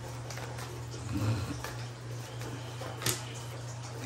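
Tarot cards being handled and shuffled in the hands, with faint small clicks and one sharp tap about three seconds in, over a steady low hum.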